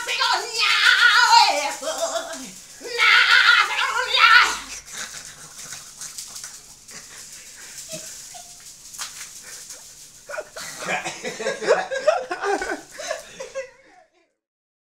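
A person's voice letting out long, high-pitched wordless cries, one falling in pitch about two seconds in, then laughter near the end.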